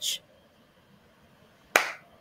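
A single sharp click or smack, about three-quarters of the way in, dying away quickly after a stretch of quiet.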